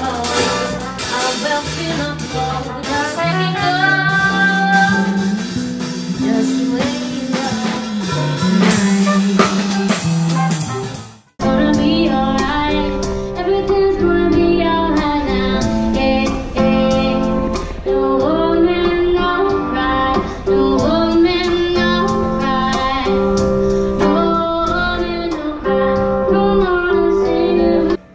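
Live music: a female singer with trumpet and piano playing a jazz standard. About 11 seconds in, it cuts off abruptly and gives way to the same female voice singing with an electric guitar accompaniment.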